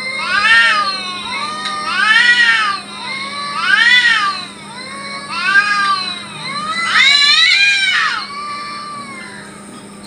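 Cats in a standoff yowling at each other: long, drawn-out caterwauls that rise and fall in pitch, about five in a row roughly a second and a half apart, the last one near the end the longest. This is the threatening yowl cats make before a fight.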